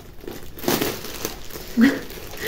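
Clear plastic polybag crinkling as it is handled and a sweatshirt is pulled out of it, louder from about half a second in.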